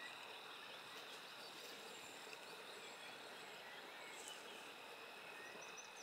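Faint rural outdoor ambience: distant birds chirping now and then over a steady soft hiss.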